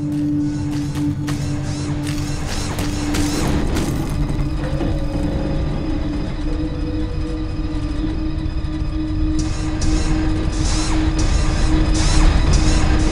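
Film soundtrack: music with a held low tone over a steady rumble, with repeated sharp clicks and clanks, thicker near the start and again near the end.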